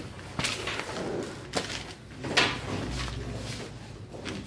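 A few sharp knocks and swishing noises of objects being moved, the loudest a swish about two and a half seconds in, followed by a short low rumble.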